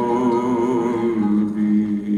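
Male singer holding a long sung note with a wavering vibrato, then stepping down to a lower held note about a second in, in classical Arabic style.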